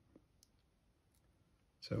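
Near silence with a couple of faint short clicks in the first half second, then a man's voice starting near the end.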